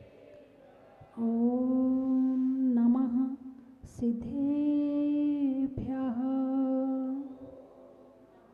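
A woman chanting in long, steady held notes, three sung phrases of one to two seconds each. They begin about a second in and fade out shortly before the end.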